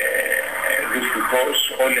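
A man speaking in Greek over a webcam link, heard through a television's speaker.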